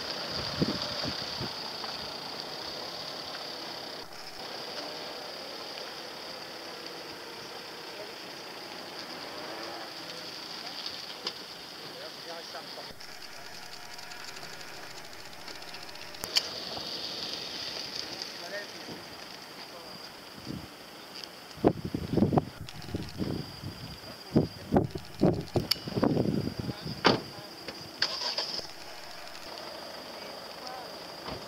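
Wind on a handheld camera's microphone, with a run of loud, irregular gusts buffeting it for several seconds near the end, over a steady high-pitched hiss.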